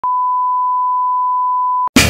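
Television line-up test tone played with colour bars: one steady, unchanging pure beep that cuts off abruptly shortly before the end, followed right away by the start of a hip-hop beat.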